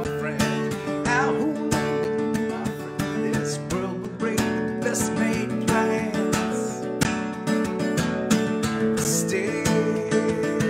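Acoustic guitar strummed in a steady rhythm, with a man singing over it at times.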